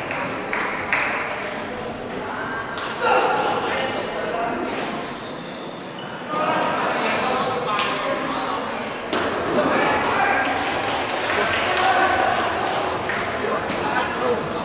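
Table tennis balls clicking off bats and tables in a busy hall, irregular hits from several tables at once, over a background of indistinct chatter.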